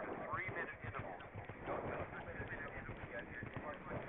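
A horse galloping over grass, its hoofbeats drumming in a steady rhythm as heard from the saddle.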